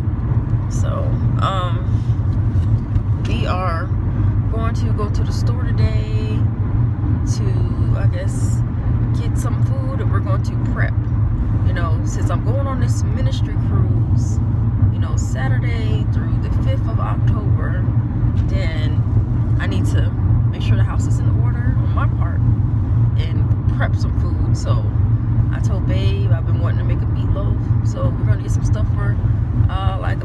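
Steady low road and engine rumble inside a moving car's cabin, with faint talking now and then.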